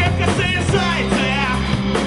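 Rock band playing live: a male singer's voice over electric guitars, bass and drums, the singer's pitch wavering about a second in.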